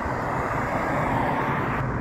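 A car driving past on the road: a steady rush of tyre and engine noise that swells a little around the middle.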